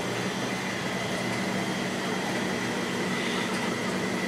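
Steady mechanical hum and hiss of running equipment, with a thin, constant high whine over it.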